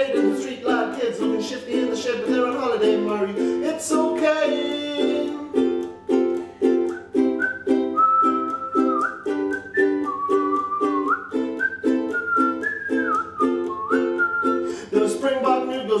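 Ukulele strummed in a steady, even rhythm, with a voice-like line trailing off in the first few seconds and a whistled melody over the strumming from about halfway through.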